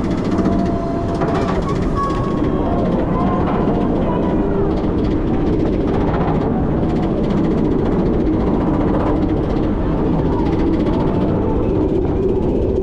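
B&M dive coaster train being hauled up its lift hill by the lift chain: a steady, loud mechanical rattle and rumble of the chain and train wheels on the track.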